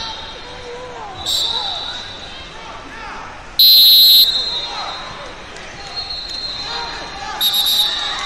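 A referee's whistle blows once, loud and high-pitched, for about half a second, stopping the wrestling action. Shorter, quieter whistle blasts sound about a second in and again near the end, over shouting voices echoing in a large hall.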